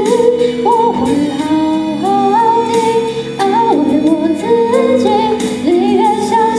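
A young woman singing a song in Chinese into a handheld microphone, amplified, over instrumental accompaniment.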